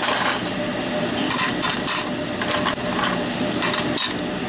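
Laptop IC chips and processors clicking and clattering as they are dropped, a few at a time, into a clear plastic tray on a digital scale.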